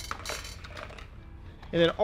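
Plastic-packaged fishing lures being picked up and handled, with light clinks and rustling at a low level.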